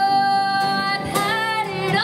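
A woman singing live into a microphone over acoustic guitar. She holds one long note that ends about a second in, then starts a new phrase.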